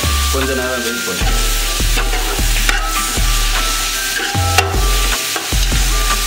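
Onions and tomatoes sizzling in hot oil in a large metal pot while a metal spatula stirs them, scraping and clinking against the pot, over background music with a low bass line.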